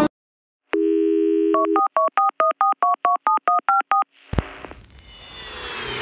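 Telephone sound effect: a steady dial tone for about a second, then a quick run of about a dozen touch-tone keypad beeps. About four seconds in, a sudden hit and a rising whoosh build toward music.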